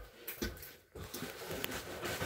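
A few faint knocks and rustles: a soft low thump at the start, a knock about half a second in and a sharp click near the end.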